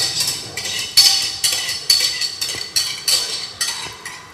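A utensil scraping and clinking against the inside of a saucepan in repeated strokes, about two a second, as a thick lemon and egg-yolk cream is stirred.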